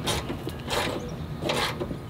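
A fastening being ratcheted tight by hand: three short rasping ratchet strokes, a little under a second apart.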